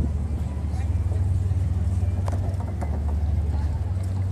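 Wind rumbling on the camera microphone, a heavy low rumble that rises and falls, with faint voices of passers-by.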